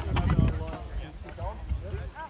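Several people talking in the background, with a steady low rumble of wind on the microphone and a few sharp knocks in the first half second.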